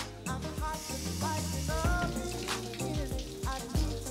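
Background music with a regular beat and a sliding melody line, over a steady hiss of running shower water that sets in about a second in.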